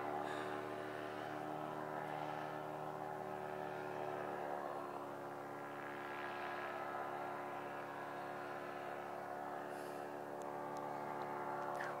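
Paramotor (powered paraglider) engine and propeller droning steadily in the air at a distance, holding one even pitch.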